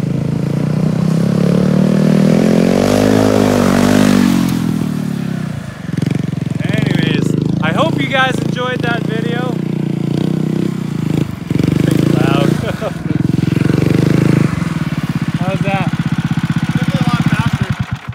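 Gas engine of a DTV Shredder tracked stand-up off-road board running close by. It revs up and back down a couple of seconds in, then runs steadily and stops near the end.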